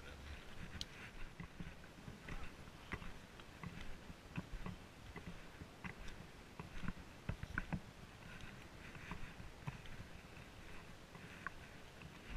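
Footsteps on a dirt hiking trail: irregular soft thumps and crunches of walking, with a few sharper clicks mixed in.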